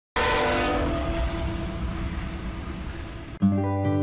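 Freight train passing close by with its locomotive horn sounding, cutting in suddenly. About three and a half seconds in it breaks off and music begins.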